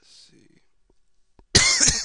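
A person coughing close to the microphone: a faint breath near the start, then a sudden loud cough about a second and a half in.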